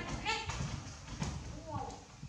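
A baby macaque's high-pitched calls: two short squeaky calls in the first half second, then a short rising call near the end, with soft low knocks in between.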